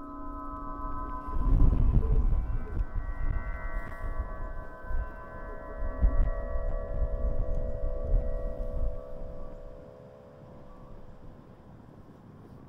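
Celtic harp strings sounding in the wind as a wind harp: sustained, overlapping ringing tones that fade, then a new chord swells up in the middle and fades near the end. Gusts of wind buffet the microphone, loudest from about a second and a half in, dying down near the end.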